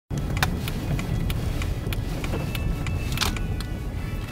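Steady road and engine rumble heard inside a moving car's cabin, with a few scattered sharp clicks.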